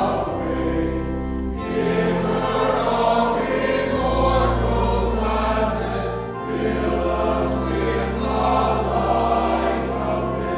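Choir and congregation singing a hymn with organ accompaniment, long held bass notes changing under the voices every second or two.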